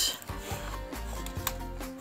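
Canvas drawstring pouch sliding out of a cardboard box sleeve: a rustling rub of fabric against card that starts with a sharp scrape, with a small click later. Quiet background music plays underneath.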